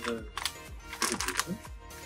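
A few short crinkles and crackles from a chip bag being handled, over faint background music.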